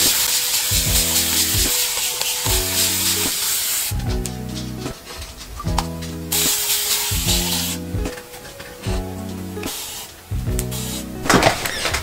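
Background music with stepping bass notes, over which a spray-bottle mister hisses water onto hair in a long spray for the first four seconds and again briefly past the middle.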